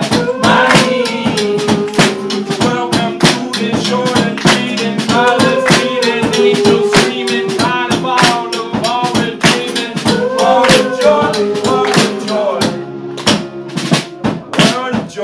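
Live band playing a song: strummed guitars and hand percussion keep a fast, even beat, with voices singing a melody over them.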